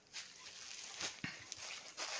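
Faint rustling of saree fabric as hands smooth and lift it on a table, with a few small clicks about a second in.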